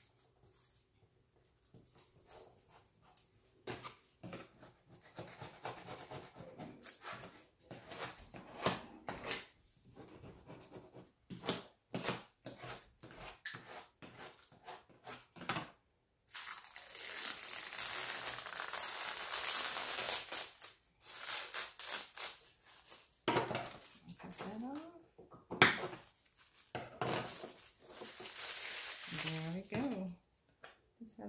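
Plastic transfer tape over adhesive vinyl crinkling as it is handled and smoothed. About halfway through, the tape is peeled off the wood in one long continuous pull lasting several seconds, and then the crinkling resumes.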